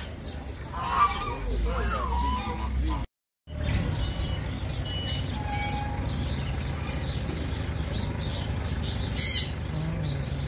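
Domestic geese and ducks honking and calling in a farmyard pen. After a short break the calls give way to a steady background with a few scattered bird chirps and one short, loud bird squawk near the end.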